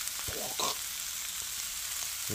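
Turkey, onion and mixed vegetables frying in butter in a skillet over medium heat, with a steady sizzle, and a faint brief noise about half a second in.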